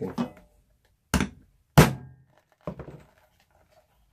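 Three hammer blows on a rivet setter, setting a leather rivet through the sheath on a wooden board. The second blow is the loudest.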